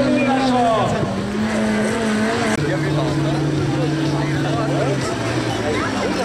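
Engine of a stripped-down combine-harvester racer running as it drives over a dirt track. It holds steady pitches that jump up or down in a few sudden steps. Voices can be heard in the background.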